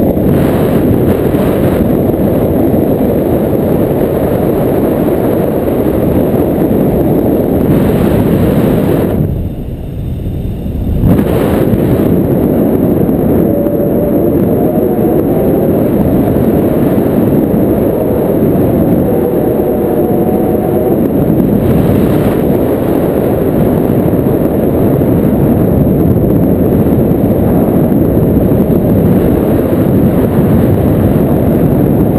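Wind rushing over the camera microphone in flight under a tandem paraglider: a steady, loud rumble that eases for about two seconds about nine seconds in.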